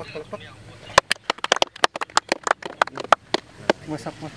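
A rapid, irregular run of sharp clicks and knocks, starting about a second in and lasting a little over two seconds.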